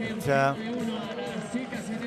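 Stadium background of many overlapping spectators' voices. One loud, short shout cuts through about a quarter of a second in.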